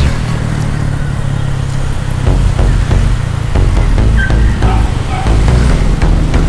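A motorcycle's engine running on the move, with electronic music with a heavy bass line playing over it.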